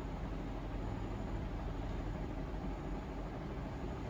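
Steady low background rumble with nothing else happening: room noise.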